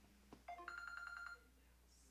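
A telephone ringing: one electronic ring about half a second in, lasting about a second, with a steady high pitch.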